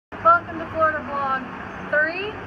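A woman speaking over a steady low background hum.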